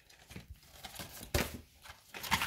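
Quiet handling of a DVD box set's packaging: faint rustles and light taps, with one sharp click a little past halfway through.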